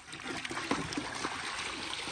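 Water splashing and trickling as a steelhead is scooped into a landing net and the net is lifted, water streaming off the mesh.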